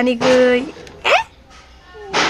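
A person's voice calling a name on one long held note that ends about half a second in, then a brief rising vocal squeak about a second in.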